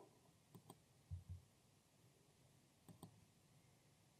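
Faint computer mouse clicks: two press-and-release pairs about two and a half seconds apart, with two soft low thumps between them.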